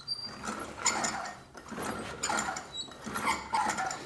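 Traditional fibreglass-laminated bow being drawn and let down several times in a row to exercise the limbs before its draw weight is checked: a repeating series of rustling strokes with short squeaks.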